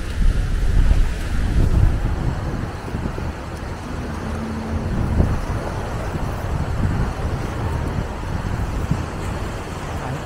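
Wind buffeting the microphone in low gusts, strongest in the first two seconds, over a steady wash of surf.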